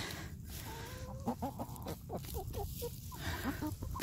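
Foraging hens clucking, a steady run of short, low calls close by.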